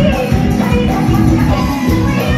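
Live Assamese Bihu song amplified through a stage PA: a woman singing over a band with a driving drum beat, flute and electric guitar. The sound is loud and dense.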